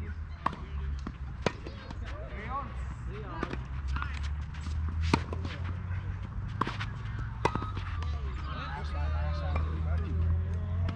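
Tennis rackets striking the ball in a doubles rally: sharp knocks at irregular spacing, from about half a second to a second and a half apart, the loudest about a second and a half in and again around five seconds in, with voices in the background.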